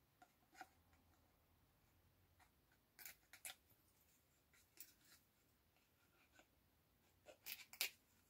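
Faint crackles and ticks of paper backing being peeled off double-sided tape, in a few short clusters, the loudest near the end.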